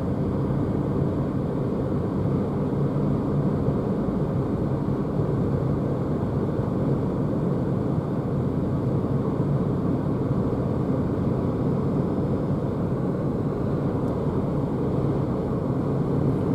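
Steady road and tyre noise with wind rush heard inside the cabin of a Renault Zoe electric car cruising at around 80 km/h.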